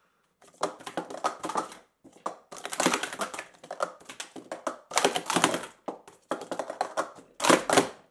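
Plastic sport-stacking cups being rapidly stacked and unstacked: several fast bursts of light plastic clicks and clatters with short pauses between them, the loudest burst near the end.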